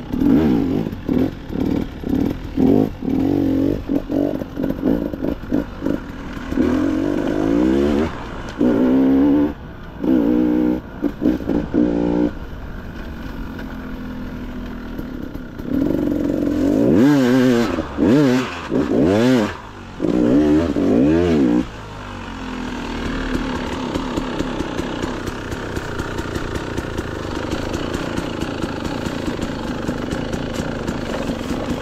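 Dirt bike engine revving in short, repeated throttle bursts as it is ridden, with several long rises and falls in pitch about halfway through, then running more steadily near the end.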